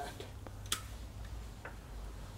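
A few light clicks, one sharper than the rest about three-quarters of a second in, over a low steady hum.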